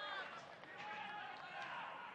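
Football stadium ambience: faint, distant shouting voices from the pitch and stands over a low background hum of the ground, with a light thud or two.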